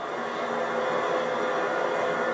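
Steady, noise-like soundtrack of a projected film with one faint held tone, slowly swelling a little, played over the speakers of a large hall.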